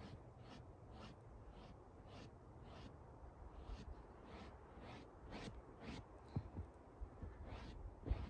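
Faint, soft swishes of a hand brushing snow off a surface, repeated about two to three times a second.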